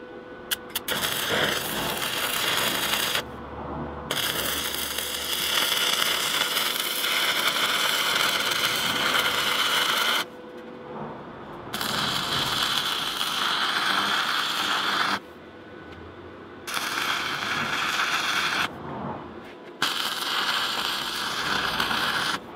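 Stick (MMA) welding arc burning on steel box section, in five runs of two to six seconds with short breaks between. A few sharp clicks come as the arc is first struck.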